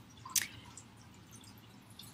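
Faint room tone with a single short click about half a second in.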